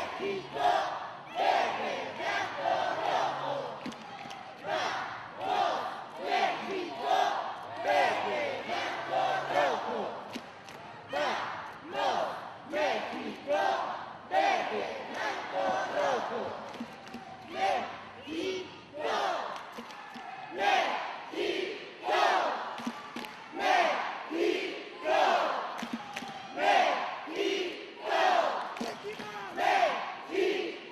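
Cheerleading squad shouting a rhythmic chant in unison, short shouted phrases about once a second, with arena crowd noise behind.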